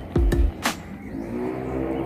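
Background music with a steady low rumble underneath and a single click about two-thirds of a second in.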